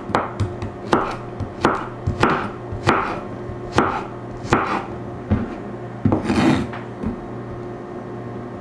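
Chef's knife slicing peeled garlic cloves on a wooden cutting board: crisp cuts that knock on the board, about one every two-thirds of a second. There is one longer scraping stroke a little past six seconds in.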